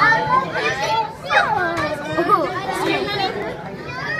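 Children's voices talking and exclaiming, with high pitches that swoop up and down, over the chatter of other onlookers.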